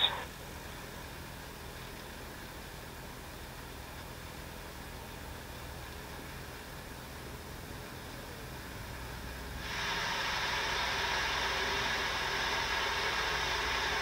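Steady hiss of background noise, which steps up abruptly to a louder, brighter hiss a little under ten seconds in and then holds steady.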